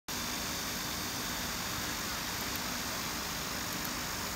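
Steady machinery noise: an even hiss with a faint low hum, unchanging throughout, with a few faint high ticks about two and a half seconds in and again near the end.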